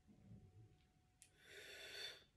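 Faint, short breath through pursed lips, hissing with a slight whistle for about half a second near the end, while a sip of wine is held in the mouth.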